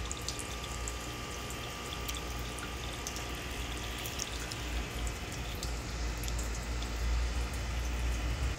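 Water from small floating solar fountain jets splashing and trickling back onto an aquarium's surface in a steady patter of fine drips, with a low rumble underneath.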